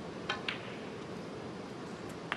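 Snooker shot: the cue tip strikes the cue ball, and a moment later the cue ball clicks sharply into a red, two short clicks over the quiet hum of the arena.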